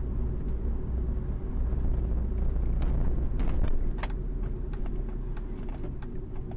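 Steady low rumble of a car on the move, heard from inside the cabin, with a few light clicks or ticks around the middle.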